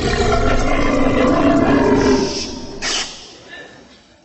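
A long, loud, deep belch of about two and a half seconds, passed off as the song of a caged canary in a comic stage gag. It fades out, with a short sharp burst near three seconds.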